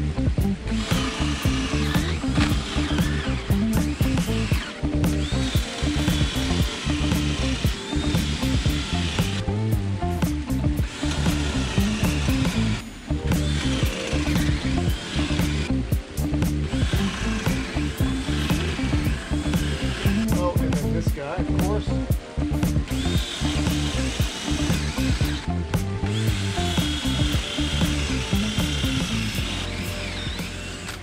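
Cordless drill with a paddle bit boring holes halfway into wooden landscape timbers, worked in and pulled back to clear the chips, with a few short pauses. Background music with a steady beat plays throughout.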